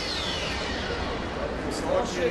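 Broadcast replay-transition sound effect, a whoosh falling in pitch over about the first second, over the steady noise of the arena crowd.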